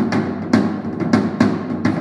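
Unmuffled rack tom with a two-ply Remo Pinstripe batter head, struck with drumsticks: several quick hits at uneven spacing, each with a ringy tone that rings out, from a drum tuned with the resonant (bottom) head tighter than the batter head.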